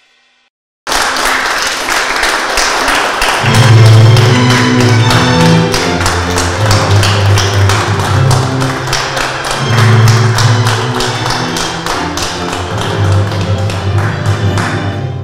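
Music with a low bass line under a quick, steady run of sharp percussive taps, starting about a second in.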